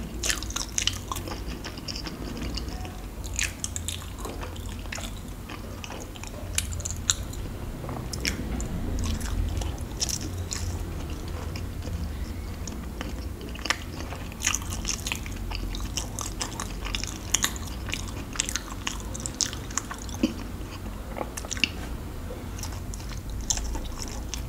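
Close-miked chewing of soft sweets: many irregular wet clicks and mouth smacks, over a low steady hum.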